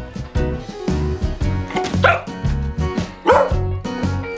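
A beagle barking twice, about a second apart, over background music.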